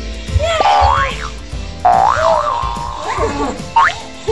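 Background music with cartoon-style boing sound effects: pitched tones that slide up and down, a fast rising sweep about half a second in, a wobbling tone about two seconds in, and another quick rise near the end.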